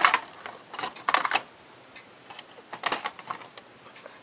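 Plastic LEGO bricks clicking and knocking as a section of a large LEGO ship model is pulled off its studs and handled, in three clusters of short sharp clicks.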